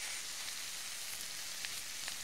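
Onion and mashed-bean mixture sizzling softly and steadily in a hot frying pan while it is stirred with a wooden spoon, with a few faint ticks of the spoon against the pan.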